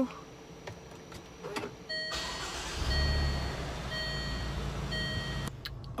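Range Rover push-start: the engine starts and runs with a low rumble while an electronic chime repeats about once a second, then the sound cuts off suddenly.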